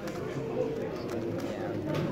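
Steady murmur of voices in a hall, with a few light clicks from an X-Man Galaxy V2 Megaminx being turned.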